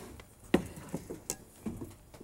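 A few light knocks and clinks from a stainless steel pot of cooked mussels as it is taken off the grill and set down, the sharpest about half a second in and again after a second.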